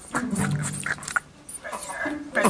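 Soundtrack of a children's puppet show playing: a low, drawn-out growl-like sound, then a character's voice starting near the end.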